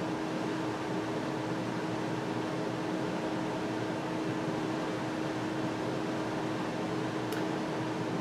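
Steady background hum and hiss, with one constant low tone held throughout, as from a fan or air-conditioning unit running in a small room.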